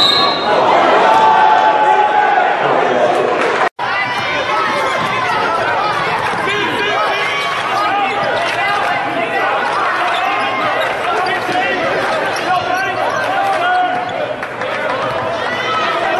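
Basketball arena ambience: many voices chattering indistinctly, with a basketball bouncing on the court. The sound cuts out for a moment about four seconds in.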